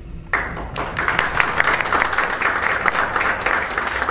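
Audience applause breaking out abruptly a moment after the start: many hands clapping densely and steadily.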